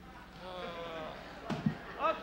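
A brief wordless voice, then two quick knocks about a second and a half in from a flight case being handled and rummaged through.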